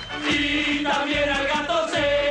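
A group of men singing a football fans' chant in unison over music with a steady beat.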